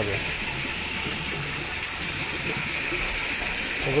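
Steady rush of running water.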